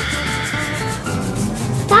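Paintbrush scrubbing acrylic paint onto paper, a steady rubbing sound, over quiet background music.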